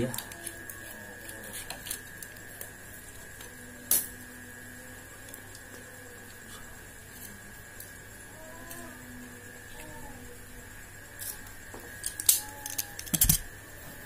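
A utility knife working at the edge of a plastic polarizer sheet on a glass tabletop: quiet handling with a few sharp clicks and taps, one about four seconds in and a cluster near the end. A steady faint high whine runs underneath.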